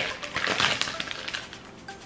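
Thin clear plastic wrapper crinkling and crackling as it is handled and pulled open by hand, busiest in the first second and then thinning out.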